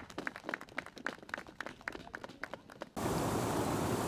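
Faint, scattered clapping of a few hands for about three seconds. It is cut off abruptly by a steady, louder rush of river water pouring over rocks.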